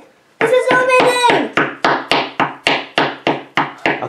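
A small wooden mallet tapping on a plaster dig-kit block, a steady run of sharp knocks about four a second beginning about a second and a half in, after a brief child's cheer.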